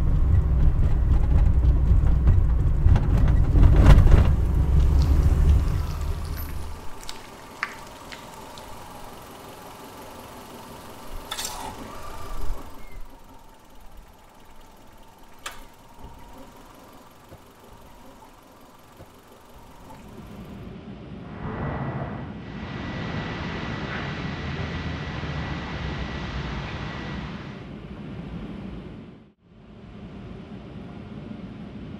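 A Toyota Corolla's engine rumbling as the car rolls into an automatic car wash; after about six seconds it drops away, leaving a quieter stretch with a few clicks and knocks. About twenty seconds in, a steady hiss of water spray with a faint thin whine starts and runs for several seconds.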